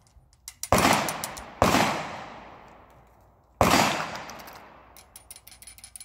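Three loud gunshots, the first two about a second apart and the third two seconds later, each ringing off for over a second. Light clicking follows near the end.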